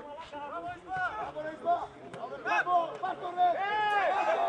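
Indistinct voices talking and calling out, with no clear words.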